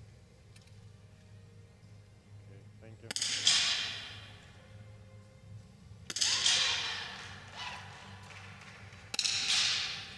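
.22 rimfire target rifle shots, three sharp reports about three seconds apart, each ringing on for about a second in a reverberant indoor shooting hall.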